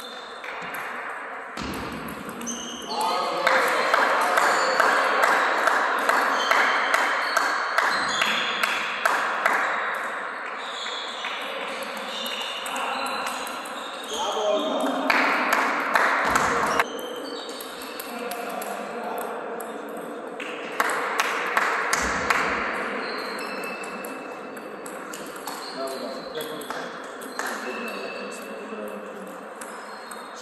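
Table tennis rallies: the ball clicking off the paddles and the table in quick, irregular exchanges, each hit with a short high ping. Several stretches of louder, noisy sound with voices come and go between them.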